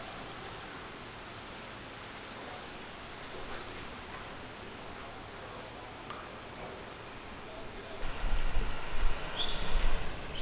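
Steady outdoor background noise with no clear single source. About eight seconds in, a louder, uneven low rumble begins.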